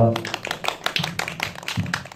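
Small audience applauding: a run of distinct, scattered hand claps.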